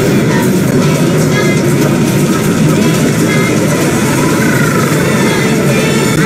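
Several video soundtracks playing over one another: logo-animation jingles and sound effects mixed with a children's song, making a dense, loud jumble of music and effects. A sliding tone stands out about two-thirds of the way through.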